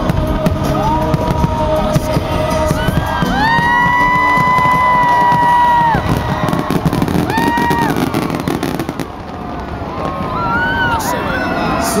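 Fireworks bursting and crackling in a dense, continuous barrage. Over them come several long, high-pitched "woo" cheers from people close to the microphone, one held for about two seconds in the middle.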